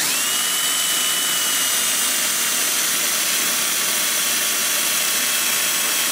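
Cordless drill running steadily at speed, a small bit boring a pilot hole through a steel guide bushing into a John Deere crankshaft flange under hard hand pressure. The motor's whine comes up at once as the trigger is pulled, then drifts slowly lower in pitch.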